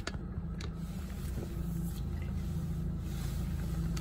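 Steady low hum inside a car cabin, with a couple of sharp clicks in the first second as the phone is handled.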